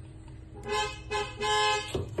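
A vehicle horn tooting three times, two short toots and then a longer one, each on one steady pitch. A light knock comes right at the end.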